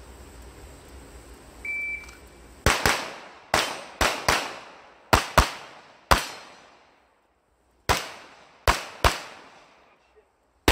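A shot timer's start beep about two seconds in, then a string of about a dozen pistol shots, fired in quick pairs and singles, with a pause of over a second midway.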